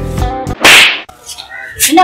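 Background music cuts off about half a second in, followed by a loud, half-second swishing crack like a whip sound effect; a woman's voice begins near the end.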